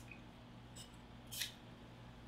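Near silence: room tone with a faint steady low hum, broken by one brief soft hiss about one and a half seconds in.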